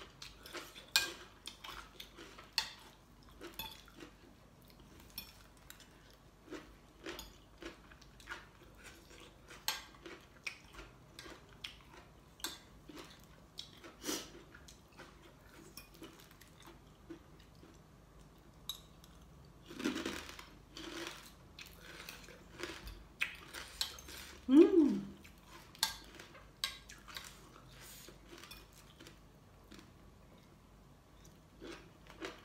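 Metal spoon and fork clinking and scraping on a ceramic plate, in many quick separate clicks, with chewing between them. About five seconds before the end comes the loudest sound, a short hum that falls in pitch, like a pleased 'mm'.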